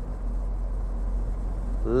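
Steady low rumble of a Smart ForTwo Cabrio driving along with its roof open: engine, tyre and wind noise in the open cabin. A man's voice starts right at the end.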